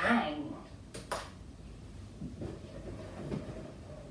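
A short exclamation from a woman's voice, then a couple of light clicks about a second in and faint handling noises as inflated rubber balloons are picked up and moved.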